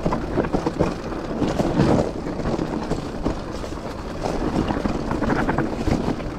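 Mountain bike rolling fast downhill over a rough, stony dirt trail: a continuous rumble of tyres on rock and dirt with many small rattles and knocks from the bike, and wind buffeting the microphone.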